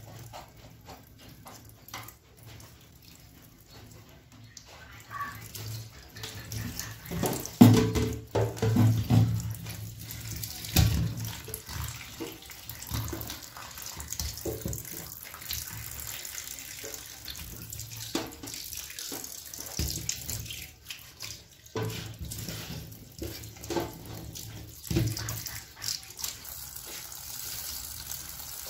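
Live eels splashing and thrashing in water in a stainless-steel sink as they are lifted by hand into a plastic basket, with irregular splashes and knocks; the loudest come about a quarter to a third of the way through.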